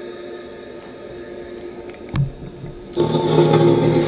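SCD-1 ghost box software playing through the Portal echo box: a steady stream of chopped, echoing audio fragments with held tones. A brief low thump comes about two seconds in, and the output gets clearly louder from about three seconds.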